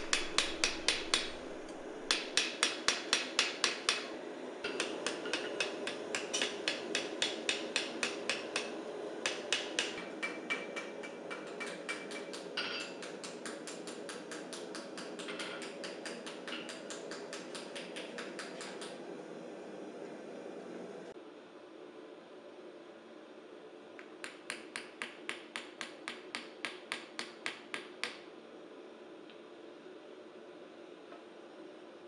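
Small hammer tapping a copper bowl held over a steel ball stake, about three to four light, ringing strikes a second in runs with short pauses, faceting the outside of the bowl. A steady background hum sits underneath and drops away about two-thirds of the way through.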